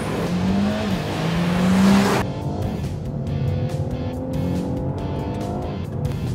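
Renault Mégane GT's 1.6-litre turbo four-cylinder accelerating hard from a launch-control start. Engine and tyre noise swell for about two seconds, then switch suddenly to a steadier engine note climbing slowly in pitch.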